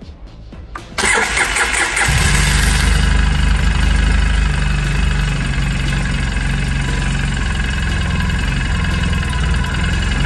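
Polaris Sportsman 800 EFI ATV's twin-cylinder engine cranked by its electric starter about a second in, catching a second later and then idling steadily. It runs on fuel pressure of about 30 psi, short of the 39 psi it calls for, which is blamed on a restricted fuel filter.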